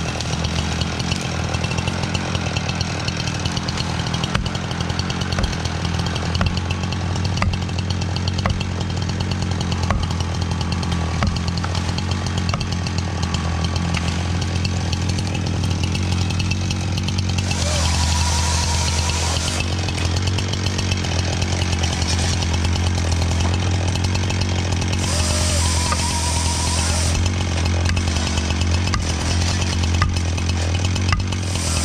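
Husqvarna chainsaw running steadily throughout, a constant low engine drone without speech. Twice in the second half a couple of seconds of hiss rises over it.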